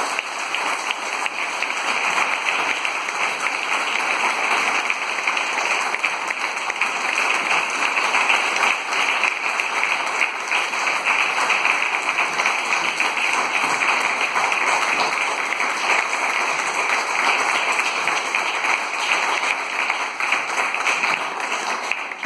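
Sustained audience applause: many hands clapping at a steady level.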